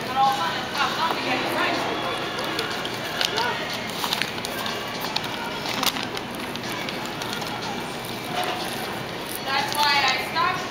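Indistinct chatter and general background noise of a busy fast-food restaurant, with a nearer voice briefly just after the start and again near the end.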